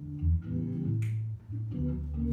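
Recorded blues-groove band music: bass guitar notes under guitar, with a sharp backbeat hit about a second in.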